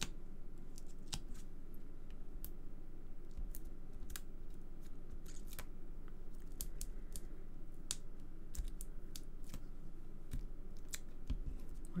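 Scattered light clicks and taps of hands handling card and a sheet of foam adhesive dimensionals on a craft desk, over a low steady hum.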